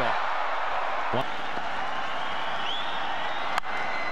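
Stadium crowd noise from a cricket ground, steady cheering and applause after a boundary shot, with a short sharp click about three and a half seconds in.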